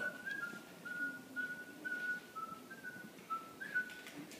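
A person whistling a short tune, fairly quietly: a run of about a dozen short notes stepping up and down in pitch.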